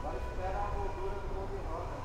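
Workshop background: a steady low rumble with a faint steady tone and faint distant voices.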